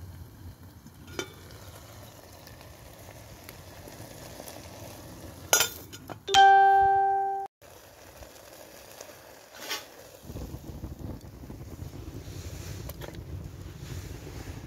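Wood fire in the base of a Kelly Kettle burning with a faint crackle. About five and a half seconds in comes a sharp click, then a loud, clear pitched tone lasting about a second that fades and cuts off abruptly. Wind rumbles on the microphone over the last few seconds.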